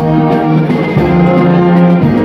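A brass band playing live: sustained brass chords over a drum beat, the chords shifting every half second or so.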